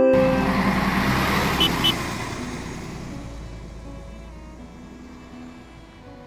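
A bus running on the road: a loud rush of engine and road noise that fades over about four seconds into a low, steady engine rumble. Two short high beeps come about two seconds in.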